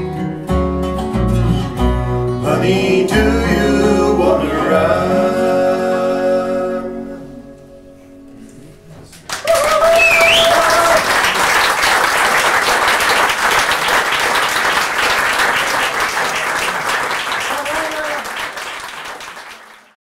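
Bluegrass band of two acoustic guitars, dobro and upright bass playing the last bars of a song and ending on a final chord that rings out and dies away. After a short hush, a small audience bursts into applause with a whoop, and the clapping fades out near the end.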